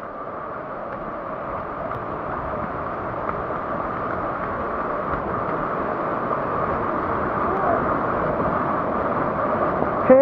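A river in flash flood: fast, muddy floodwater rushing past in a steady, loud rush that grows gradually louder over the first few seconds.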